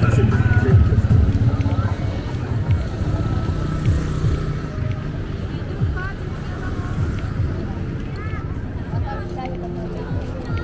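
Roadside traffic ambience: motor vehicles, including a motorcycle, passing on the highway, loudest in the first second or so. Voices and chatter of people near the stalls carry in the background.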